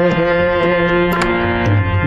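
Harmonium playing a melody of held reed notes, with drum strokes underneath.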